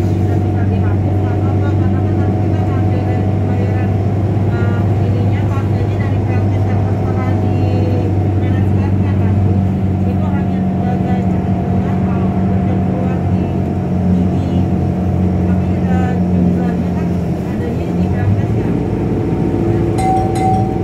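Steady low engine drone and road noise inside a moving road vehicle. The hum shifts near the end.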